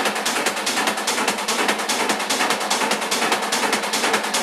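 Hard techno DJ mix in a stripped-back passage with the bass and kick drum cut out: a fast, even run of crisp percussion hits, many a second, over mid-range synth texture.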